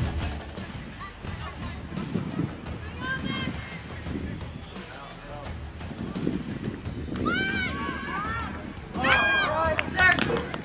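Players shouting on a soccer field during a corner kick: short calls a few seconds in and again near the end, where the shouting is loudest, over open-air field noise.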